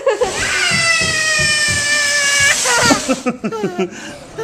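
A child's long, high-pitched squeal, held steady for about two seconds and sliding down at the end, followed by giggling and chatter, with low thumps underneath.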